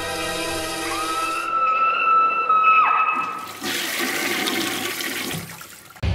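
Logo sting: a held music chord gives way to a single high tone that slides up, holds and drops off, then a toilet flush rushes and fades away.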